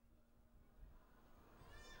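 Near silence with a faint low hum, and a faint brief pitched sound near the end.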